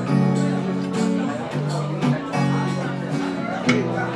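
Acoustic guitar strumming a slow chord progression, the chords changing about every second, with a sharper stroke near the end.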